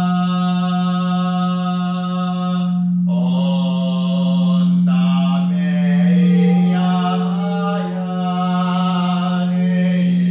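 Man's voice toning a long held note in a chant, the vowel colour shifting about three seconds in and again every second or two after. Beneath it runs the steady drone of quartz crystal singing bowls.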